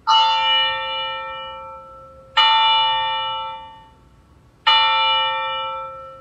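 Altar bell struck three times, about two and a half seconds apart, each stroke ringing out and fading. It marks the elevation of the host at the consecration.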